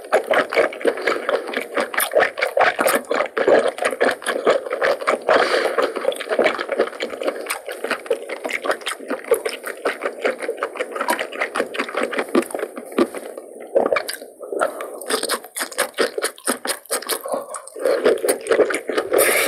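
Close-miked chewing of cooked octopus and seasoned loach: a steady run of quick wet mouth clicks and smacks, easing off for a moment a little past the middle.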